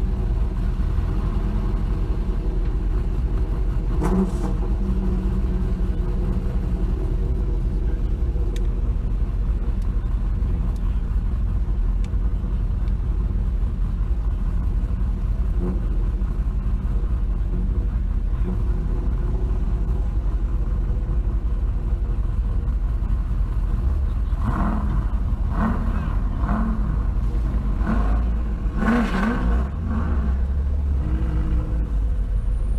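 A car's engine running steadily, heard as a low rumble from inside the cabin. A voice is heard briefly near the end.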